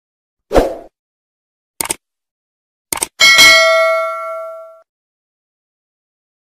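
Subscribe-button animation sound effect: a short thud, then two quick pairs of clicks, then a bright bell ding that rings out and fades over about a second and a half.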